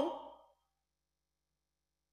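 Near silence: the tail end of a man's spoken word fades out at the very start, then nothing at all.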